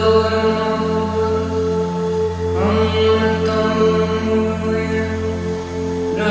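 Tibetan singing bowls ringing in long sustained tones, with a voice chanting a mantra in long held notes over them. A new chanted phrase begins about two and a half seconds in.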